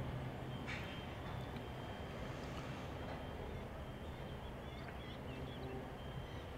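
Steady low outdoor background hum, with a few faint high bird chirps about four to five seconds in.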